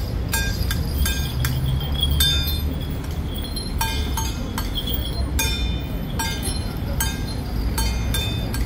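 Struck small metal percussion clinking, irregular strikes about two or three a second, each with a short bright ring, accompanying a Ba Jia Jiang troupe's steps. A low steady rumble runs underneath.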